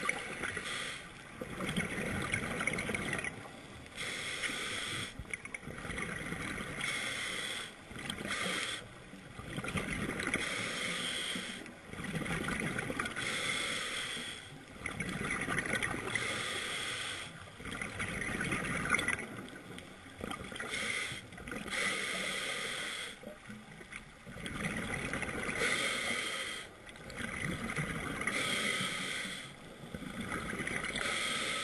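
Scuba diver breathing through a regulator underwater: a repeating cycle of inhalation hiss and exhalation bubbles, each stretch about one to two seconds long with brief pauses between.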